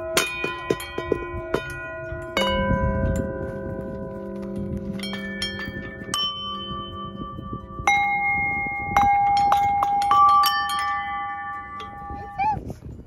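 Metal dome bells of a playground chime post struck one at a time with a mallet, each note ringing on and overlapping the next. About a dozen irregular strikes at different pitches, with a loud one about two seconds in and a quicker run of notes near the end.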